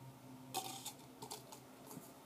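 Thin plastic cups being handled, giving a few light, irregular clicks and taps.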